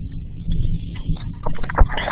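Low rumbling noise with scattered short clicks and knocks, heard through an online meeting's narrowband audio from an open microphone.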